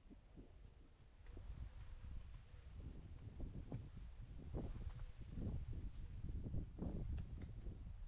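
Wind buffeting an outdoor microphone: a low, uneven rumble that grows in gusts from about two seconds in, with a couple of faint clicks near the end.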